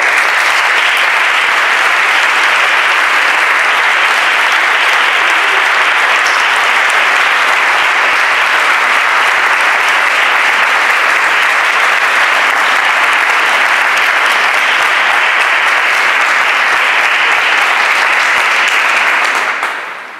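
A large crowd applauding: steady, dense clapping that starts all at once and dies away near the end.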